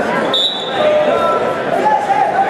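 People's voices calling out in a gym around a wrestling bout, with a brief high squeak about a third of a second in.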